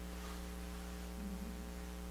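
Steady electrical mains hum: a low, even buzz with a ladder of overtones, with no break or change.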